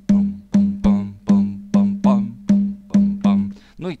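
Sampled low conga from an Ableton drum kit looping a simple one-drum rhythm. Each stroke has a resonant, pitched ring, and the strokes fall in a repeating long-long-short (3-3-2 sixteenths) spacing: the tresillo figure.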